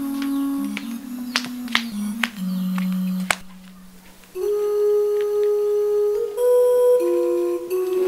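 Background film music of slow, held notes that step from one pitch to the next, with a few sharp clicks in the first few seconds. About three and a half seconds in the music drops away briefly, then comes back louder on higher held notes.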